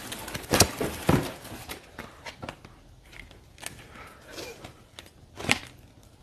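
Plastic packaging crinkling and rustling by hand as a hair extension is pulled from its sleeve, with a few sharper crackles about half a second, a second, and five and a half seconds in.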